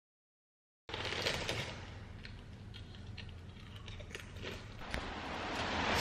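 After about a second of dead silence, rain falling outdoors: a steady hiss with scattered patters and drips that grows slowly louder.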